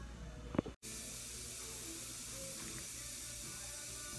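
Steady faint hiss of background room noise in a small room, with a single sharp click about half a second in and a brief dropout of all sound just under a second in.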